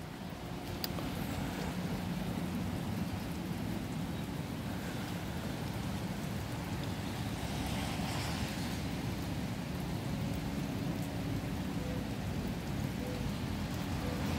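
Steady rain falling, a continuous even hiss.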